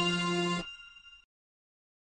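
Held final chord of a TV programme's electronic opening theme, which stops about half a second in, followed by silence.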